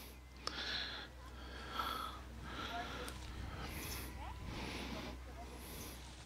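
Quiet outdoor ambience: a low steady rumble with soft rustling sounds about once a second.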